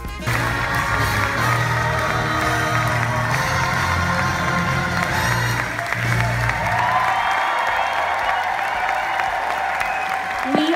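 Theatre audience clapping and cheering over loud curtain-call music; the bass of the music drops away about seven seconds in.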